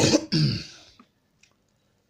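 A man coughing into his fist: two coughs within the first second, a short sharp one and then a longer one.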